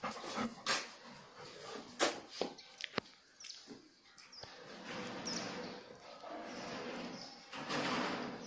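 A dog moving about on a tiled floor. Scattered sharp taps and knocks come in the first three seconds, then soft shuffling noise with a few brief high squeaks.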